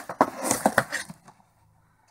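Cardboard shipping box being handled and its lid flipped open: a few light scrapes and taps of cardboard that die away after about a second.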